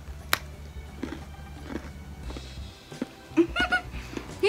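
A gingerbread cookie snapping once as it is bitten, a single sharp crack about a third of a second in, over quiet background music. A brief voiced sound comes near the end.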